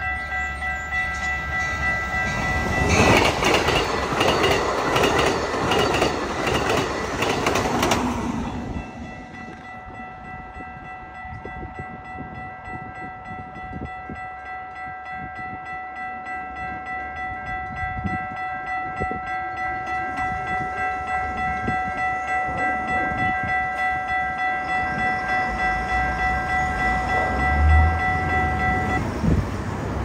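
Railroad grade-crossing warning bell ringing steadily as a single repeating tone, stopping suddenly near the end as the crossing clears. A loud rush of noise lasts a few seconds early on, and a low rumble builds through the second half.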